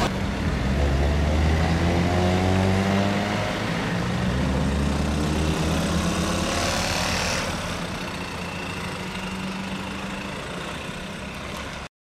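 Cars pulling away and accelerating past one after another, engine pitch rising, with a rush of tyre and wind noise as one passes about six seconds in; the engines then fade as they drive off, and the sound cuts off suddenly near the end.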